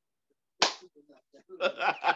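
A single sharp hand slap about half a second in, then a man breaking into laughter near the end.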